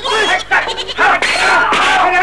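Goats bleating in wavering calls, mixed with men's shouting voices.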